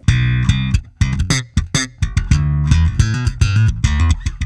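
Fender Jazz Bass played through an Eden Terra Nova TN226 bass amp with its Enhance EQ control turned all the way up: a fast line of short, sharply attacked notes with a strong low end and a bright top.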